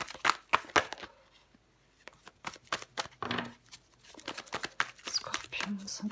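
A deck of tarot cards being shuffled and handled: a quick run of crisp card snaps and flicks, a short pause about a second in, then more snapping and flicking.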